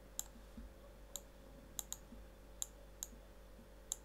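Faint computer mouse clicks: about seven short, sharp clicks at irregular intervals, two of them in quick succession near the middle.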